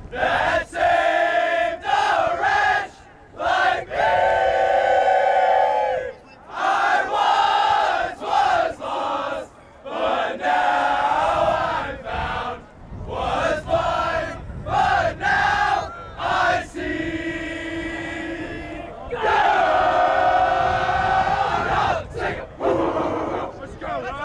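A huddle of young men loudly singing a team chant together, in phrases broken by short pauses, with some notes held for a second or two.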